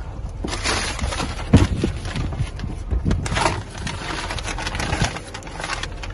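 Irregular knocks and rustling from things being handled in a car's trunk, over a steady low outdoor rumble. The loudest knock comes about a second and a half in.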